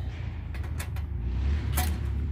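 Cordless brushless impact driver tightening a license plate screw, with a few short sharp clicks over a steady low rumble.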